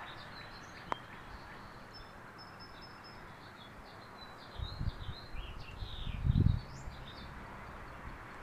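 Small birds chirping and twittering over outdoor background noise. In the second half, gusts of wind buffet the microphone in low rumbles, the loudest about six seconds in.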